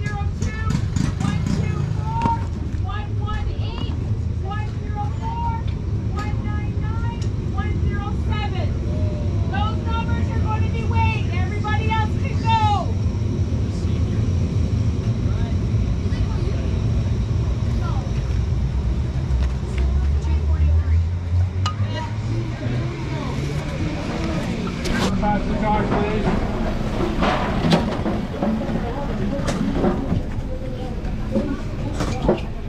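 Steady low engine drone with voices over it in the first half; about twenty seconds in, an engine's pitch climbs for a few seconds.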